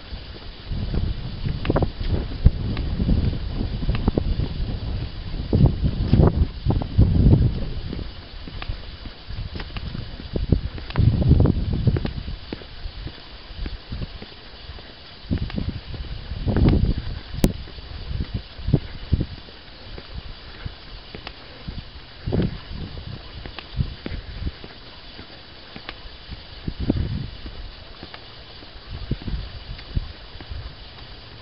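Wind gusting over a compact camera's built-in microphone in irregular low rumbles, heaviest in the first dozen seconds and again around sixteen seconds in, with footsteps on a tarmac lane and a faint steady hiss beneath.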